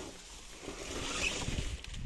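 Dry maize stalks and leaves rustling, with footsteps in the grass, growing a little louder about halfway through.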